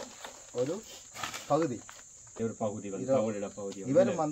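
A man's voice speaking in short phrases over a steady, high-pitched insect drone.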